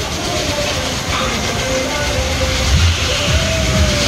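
Loud fairground din: a heavy, uneven mechanical rumble from the rides, with music mixed in.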